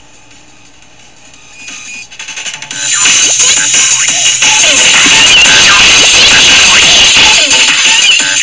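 Loud music and sound effects from a children's skit video played back on a computer. It starts low, builds over the first three seconds, then runs loud and dense with some sliding tones.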